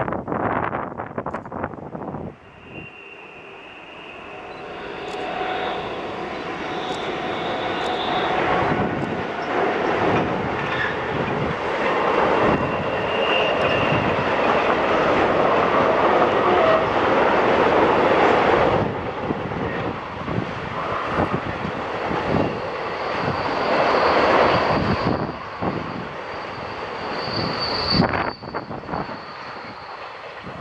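Freight train of container wagons hauled by a Renfe class 253 electric locomotive rolling past: a dense rumble of wheels on rail builds over about fifteen seconds, stays strong while the wagons pass, and drops away near the end. Thin high steady tones come and go over the rumble. Wind buffets the microphone in the first two seconds.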